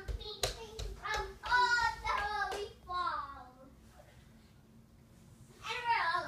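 A young child's wordless, high-pitched, sing-song vocalizing for about three seconds, then a pause and another short call near the end. A couple of sharp taps in the first second.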